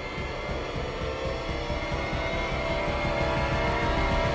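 Tense dramatic background score: sustained tones over a low, fast pulsing beat, slowly swelling in loudness.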